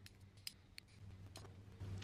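Faint, sharp snips of carbon-steel Satsuki hasami bonsai shears cutting small juniper branches, about four clicks spread over two seconds.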